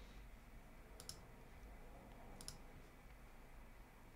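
Near silence with two computer mouse clicks, about a second and two and a half seconds in, each a quick press-and-release.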